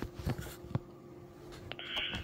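Pause between transmissions on a Yaesu FT-70D handheld transceiver: a faint steady hum with a few short clicks, then near the end a burst of hiss as the receiver opens on the next station's transmission, just before his voice comes through.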